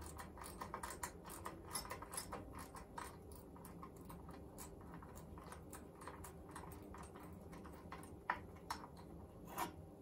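Faint, irregular small metallic clicks and ticks of long-nose pliers and a spanner on a small lock nut being worked loose, busier in the first few seconds, with a few sharper clicks near the end.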